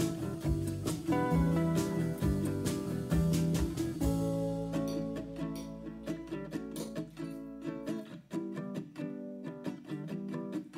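Background music of plucked acoustic guitar. A low beat under it fades out about halfway through, leaving the guitar.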